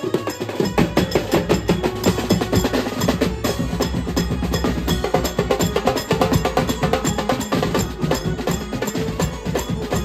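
A Mumbai banjo-party band playing live: fast, dense drumming on a multi-drum kit of toms and snares with cymbal strokes, alongside other players beating drums with sticks. A deep bass comes in about half a second in.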